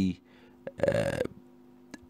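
A man's voice: the end of a spoken word, then a short throaty vocal sound, like a hesitation 'uh' or a small burp, about a second in. A faint steady electrical hum runs underneath.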